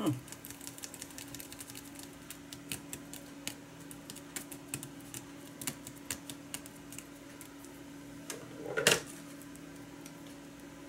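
Light, irregular clicks and crackles of paper and a plastic sheet being handled, coming thick for about six seconds and then thinning out, over a faint steady hum. A brief louder sound stands out near the end.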